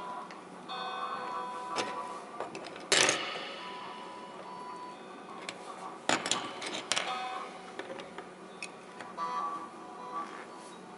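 Hard white bars knocking and clinking against each other and the tabletop as they are stood upright and shifted by hand. The knocks leave short, pitched ringing tones. The loudest knock comes about three seconds in, with a cluster of clacks around six to seven seconds.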